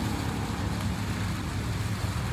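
Steady low rumble of outdoor background noise, with no distinct putter strike standing out.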